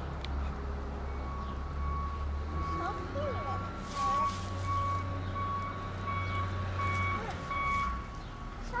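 A vehicle's reversing alarm beeping in an even, repeated pattern from about a second in, over a steady low rumble.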